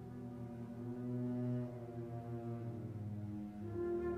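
Slow orchestral music: held low chords in a deep, brass-like tone that shift slowly, with a higher chord coming in near the end.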